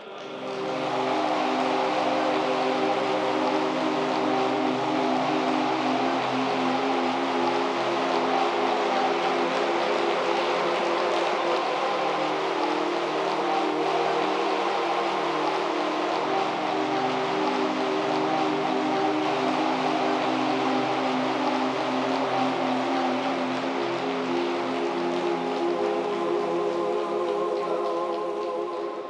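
Long, steady applause from a large audience, with held musical tones underneath.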